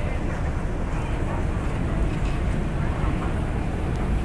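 Steady low rumble and hiss of an MRT station passageway, heard while riding a moving walkway (travelator).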